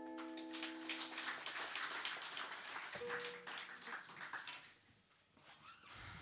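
The final strummed chord of an acoustic guitar rings out and fades over the first second and a half, while a small audience applauds. The applause dies away about four and a half seconds in.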